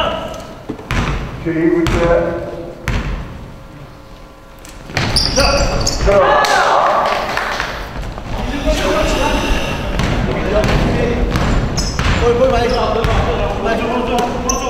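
A basketball bounced on a hardwood gym floor, three times about a second apart, then from about five seconds in, busy play with shouting voices and the ball dribbling, echoing in the gym.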